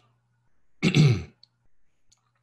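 A man clears his throat once, a short rough burst about a second in.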